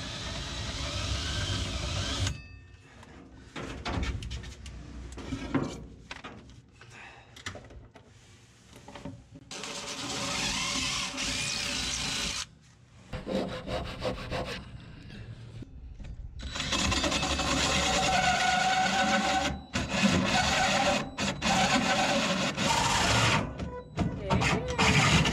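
DeWalt cordless drill with a hole saw cutting a circular hole through a plywood panel, run in several bursts with pauses between them, the longest near the end.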